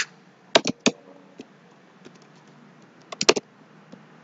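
Computer keyboard keys being typed: three keystrokes about half a second in, then a quick burst of about four a little past three seconds.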